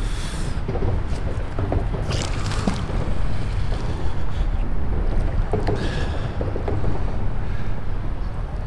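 Wind buffeting the action camera's microphone: a steady low rumble, with a few brief rustles about two seconds in and near six seconds.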